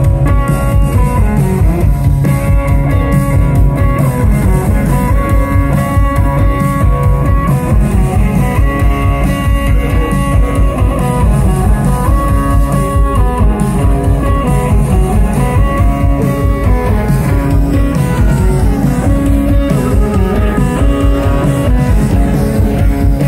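Rock band playing live: electric guitars, bass and drum kit in a loud, steady instrumental passage, with a guitar line of repeated held notes over the beat.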